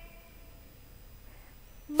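Near silence: faint room tone in a pause between spoken words, with a woman's voice starting again right at the end.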